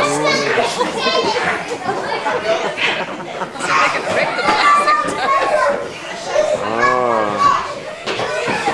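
A group of young children chattering and calling out over one another, with one voice near the end calling out in a long swooping rise and fall of pitch.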